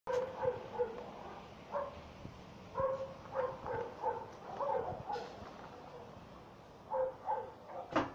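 A small dog whining and yipping in short, high calls, coming in several quick bursts with short pauses between.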